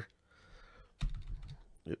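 Computer keyboard keystrokes: a sharp key press about a second in, followed by lighter key taps.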